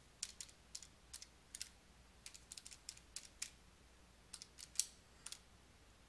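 Faint, irregular clicking of buttons being pressed one after another on a scientific calculator as a long calculation is keyed in.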